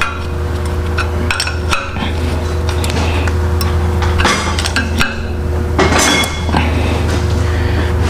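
Scattered metallic clinks of a wrench working nuts onto steel exhaust-manifold studs, with two longer rattling clatters in the second half, over a steady low hum.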